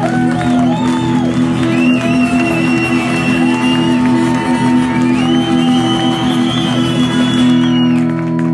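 Live guitar holding a steady chord, with crowd voices shouting and singing along over it.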